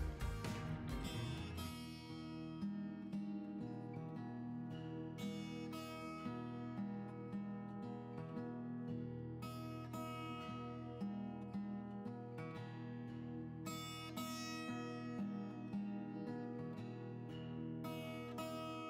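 Quiet instrumental background music of plucked strings, notes picked in a steady flow.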